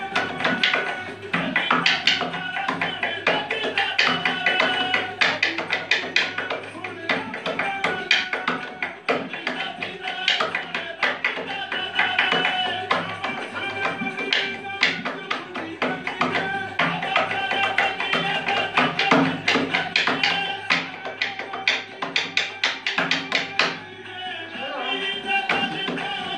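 Music made of fast, rhythmic hand claps and taps with a melody running over them, continuing without a break.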